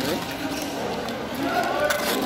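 Spectators' voices and chatter in a badminton hall, with one short call at the start and a higher call in the second half. A couple of sharp taps come near the end.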